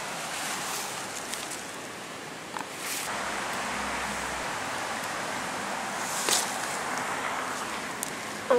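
Steady outdoor wind hiss with faint rustling of bramble leaves and a few brief taps and clicks as blackberries are picked by hand.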